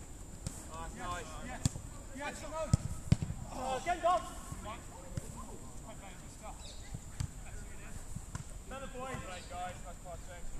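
Footballers calling out across a pitch, mixed with a few sharp thuds of a football being kicked; the loudest pair of kicks comes about three seconds in.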